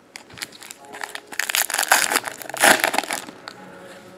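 Foil trading-card pack wrapper being torn open and crinkled by hand. The rustling crackle starts about a second in, peaks near the three-second mark and then dies away.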